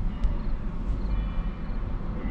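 Low, steady cabin rumble of a Tesla Model 3 electric car rolling at a crawl, mostly tyre and road noise, with a faint high tone joining about a second in.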